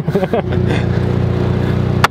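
A car engine running steadily at an even pitch, with a short sharp knock near the end.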